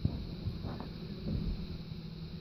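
A low steady hum over faint background noise, with a couple of faint soft knocks.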